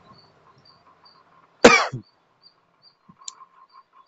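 A man coughs once, sharply, about a second and a half in. Faint, evenly repeated high chirps continue in the background.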